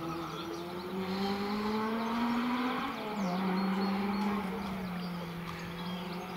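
Honda Civic Type R rally car engine accelerating hard, its note climbing steadily, then dropping at a gear change about three seconds in and pulling on at a steadier pitch.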